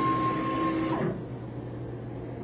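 Laser engraver's gantry stepper motors whining at a steady pitch as the laser head is jogged across the bed, stopping about a second in. A low steady hum from the machine continues underneath.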